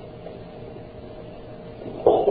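Steady background hiss with a low hum, the noise floor of the recording in a pause of speech; no distinct sound event.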